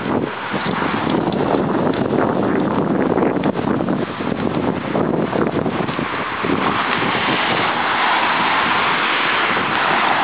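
Wind buffeting a handheld camera's microphone outdoors: a loud, uneven noise that settles into a steadier hiss in the last few seconds, with street traffic beneath it.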